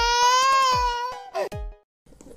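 A person's long, high wailing cry, held on one pitch and rising slightly, over music with a steady kick-drum beat. Both stop abruptly shortly before the end.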